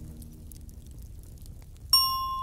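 Fire ambience in a pause between music: a low steady noise with a few faint crackles. Just before the end, a single bell-like glockenspiel note rings out.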